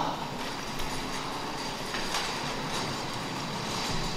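Small wheels of a serving trolley rolling across a stage floor: a steady rumble with a faint, steady high squeal and a few light ticks.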